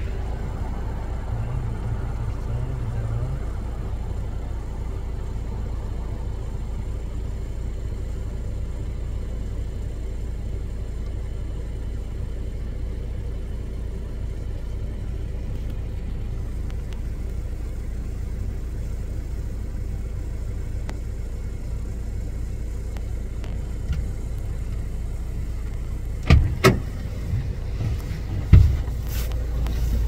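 Car engine running, a steady low rumble heard from inside the vehicle. A few sharp knocks come near the end.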